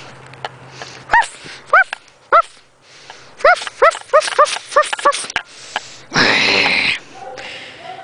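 Dogs barking in short, high yips: three single barks about a second apart, then a quicker run of about six. A loud rush of noise lasting under a second comes about six seconds in.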